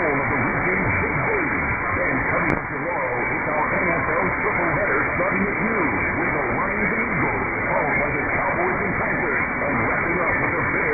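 Transatlantic medium-wave AM reception of WFAN New York on 660 kHz: talk radio speech heard faintly and muffled through a steady bed of hiss and static.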